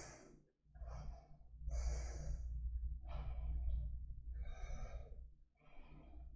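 A woman holding a yoga standing pose breathing audibly, about five slow breaths in and out, each a soft rush of air, over a steady low hum.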